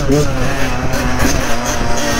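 Yamaha dirt bike engine running under way at a fairly steady speed, close to the microphone, with a rumble under it.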